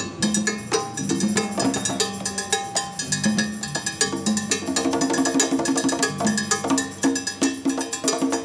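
Live Latin percussion groove: congas played by hand, with ringing open tones, over timbales played with sticks, whose sharp metallic stick strikes keep up a fast, steady pattern.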